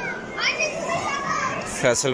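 Children's voices and crowd chatter, with a child's shout rising in pitch about half a second in. A man's voice starts close by near the end.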